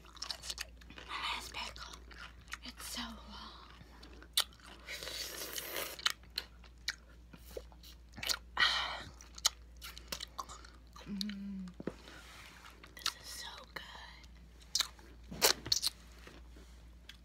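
Close-miked mouth sounds of eating a juicy pickle: crunchy bites, wet chewing and slurping, with many sharp mouth clicks. A brief hummed "mm" comes about eleven seconds in.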